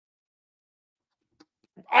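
Near silence, with the microphone gated to dead quiet and a faint click about a second and a half in; a man starts speaking loudly just before the end.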